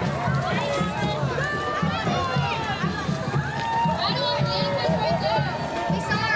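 Several high young voices talking and calling out over one another, over faint background music with a steady low beat.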